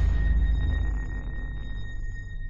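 Title-card sound effect: a deep boom that slowly fades under a steady high ringing tone.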